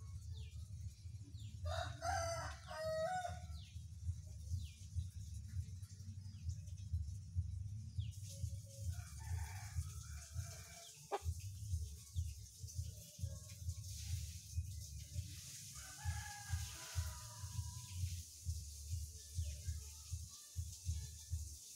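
A rooster crowing three times, each call lasting a second or two, about seven seconds apart, the first the loudest, over a steady low rumble.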